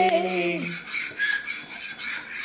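Metal fork scraping and rubbing against a plastic high-chair tray in a run of quick, short strokes.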